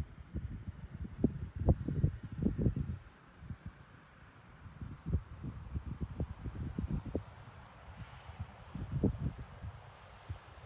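Wind buffeting the microphone in irregular low rumbling gusts, heaviest in the first few seconds and again near the end, over a faint steady rushing.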